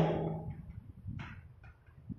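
Faint ticks and short scratches of chalk writing on a blackboard over low room noise, the clearest stroke about a second in.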